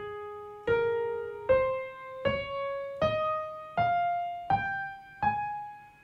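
Piano playing the A-flat major scale one octave upward, one note at a time, a new note about every three-quarters of a second, with the top A-flat left ringing near the end.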